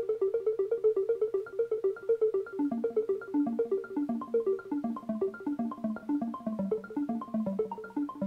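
SKRAM sequencer app on an iPad playing a looped pattern of short synth notes, a quick even run of about six notes a second. The line sits higher at first and moves down to a lower register about two and a half seconds in.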